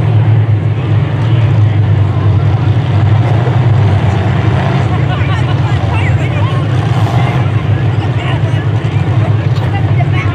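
Stock-car engines running in a steady low drone, with many voices chattering over it.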